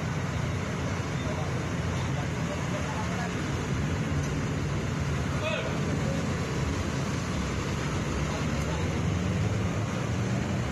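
Steady street noise from the cars' engines running, with indistinct voices of a crowd in the background.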